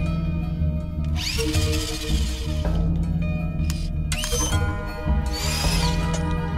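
Tense background film score: a steady deep bass drone with two swelling whoosh effects, one about a second in and another in the second half.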